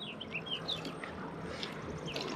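Birds chirping, a scatter of short high calls, over a faint steady background noise.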